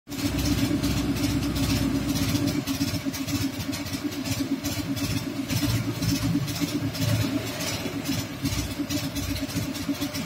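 An engine running steadily with a fast, even throb.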